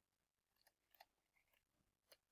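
Near silence: room tone with a few very faint short ticks.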